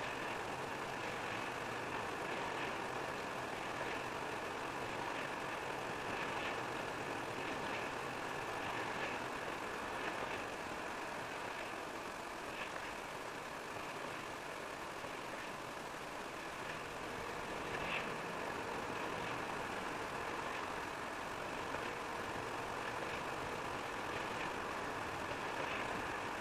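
Steady road noise of a car driving at highway speed, tyres on wet asphalt with engine hum, heard from inside the cabin. A few faint ticks come through now and then.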